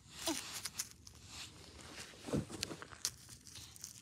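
Powdery snow crunching and crackling in short irregular bursts as plastic toy figurines are moved and pressed into it by hand, with a brief voice-like sound at the very start.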